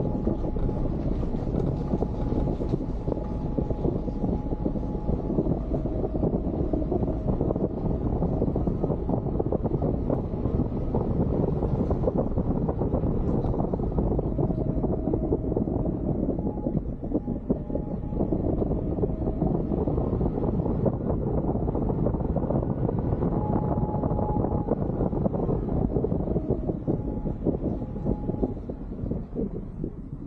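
Suzuki Jimny driving along a gravel forest track, heard from a roof-mounted camera: a steady rush of engine, tyre and wind noise on the microphone, easing off near the end.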